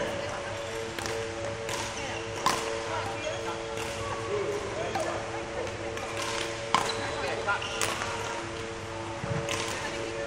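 Badminton rackets striking shuttlecocks, sharp hits about once a second, the loudest at about two and a half seconds and near seven seconds, over a steady hum of sustained tones.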